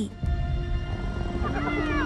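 Film soundtrack of hyenas: a low, dense growl under held music tones, with a few falling calls starting about a second and a half in.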